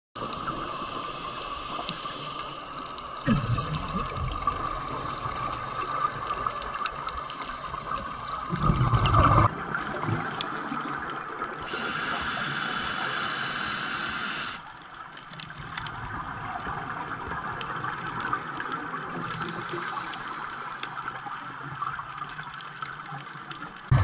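Underwater sound from a diving camera: a steady watery hiss with a constant hum, broken by two loud rushes of scuba exhaust bubbles, about three and nine seconds in. The sound turns brighter and hissier for a couple of seconds about twelve seconds in.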